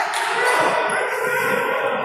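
Futsal match play on a wooden sports-hall floor: the ball being kicked and bouncing, with players' running footsteps and calls in a reverberant hall.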